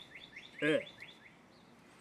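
A small bird chirping a quick run of short rising notes, about six a second, that stops about a second in.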